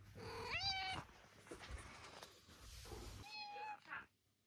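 Domestic cat meowing twice: a short rising meow about half a second in and a second, steadier meow near the end, with some shuffling noise between.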